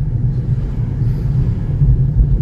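Steady low rumble of a small car's engine and tyres, heard from inside the cabin while cruising slowly at about 30 km/h.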